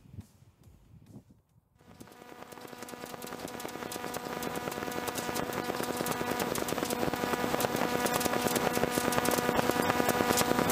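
Light aircraft's piston engine and propeller running at a steady pitch, heard from the cockpit. It comes in about two seconds in and grows steadily louder.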